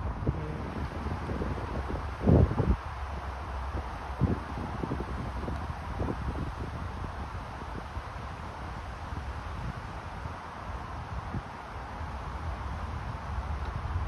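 Wind buffeting the microphone in a steady low rumble, with a couple of brief louder bumps about two and four seconds in.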